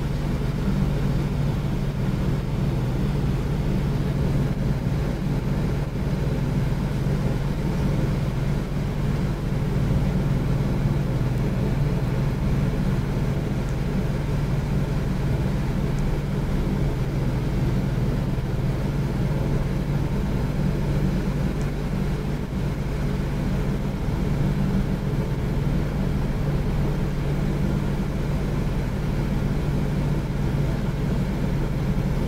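A steady, low mechanical hum.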